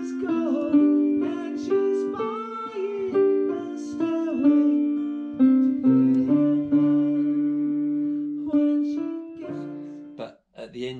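A digital piano played slowly with both hands: a melody over held chords. Low bass notes come in about six seconds in.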